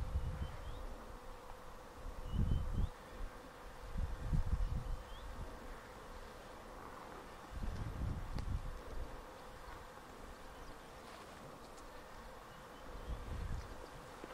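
Faint steady insect buzzing in grassland, broken four times by short low rumbles of wind and footsteps on the microphone as the hunter and camera walk through tall grass.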